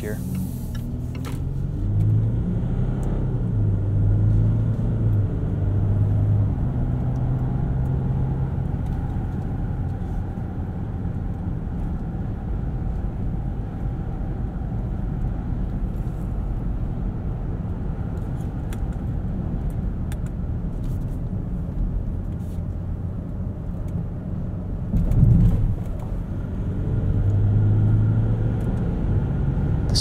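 Interior sound of a Land Rover Discovery's 3.0-litre turbodiesel V6 pulling hard under full-throttle acceleration through its eight-speed automatic, heard in the cabin over steady road and tyre rumble. The engine note is strongest in the first several seconds, then settles to a cruise. A single sharp thump comes about 25 s in, and the engine pulls strongly again near the end.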